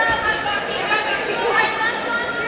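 Several voices chattering and calling at once, overlapping and unintelligible, echoing in a large gymnasium.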